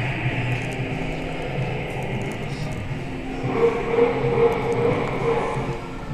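Steady indoor room noise with background music. A held, pitched tone comes in a little past halfway and fades before the end.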